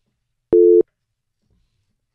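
A single short electronic beep: one steady low tone, about a third of a second long, about half a second in.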